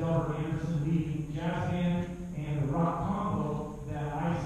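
Male voices chanting in long, sustained tones on a steady low pitch, the vowel sound changing every second or so.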